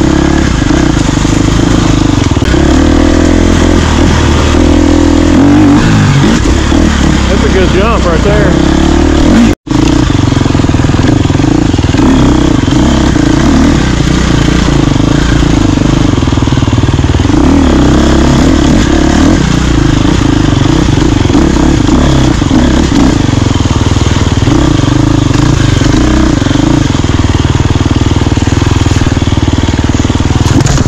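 Off-road dirt bike engine running and revving up and down as it is ridden over trail, loud and continuous. The sound cuts out for an instant about ten seconds in.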